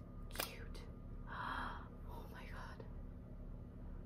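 A soft click, then breathy whispered or gasped sounds from a woman's voice.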